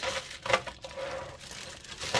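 Clear plastic bag of costume jewelry crinkling as it is grasped and picked up, with a sharper rustle about half a second in.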